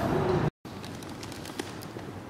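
Loud busy background ambience, broken off abruptly by an edit about half a second in, followed by much quieter steady room tone with a few faint clicks.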